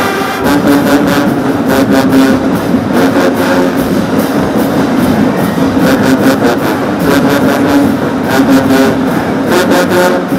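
Marching band brass (sousaphones, trombones and trumpets) and drums playing loud, with held horn chords over repeated drum and cymbal hits.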